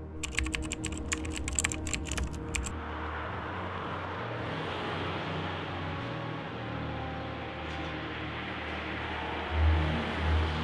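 A quick run of sharp clicks, like keyboard typing, for about the first two and a half seconds. Then a steady hiss of road traffic over a low engine rumble, which swells near the end.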